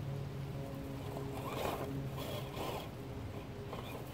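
Axial SCX10 II RC rock crawler's electric motor and geartrain whining steadily as it crawls slowly over a log, with its tyres crunching dry leaves twice around the middle.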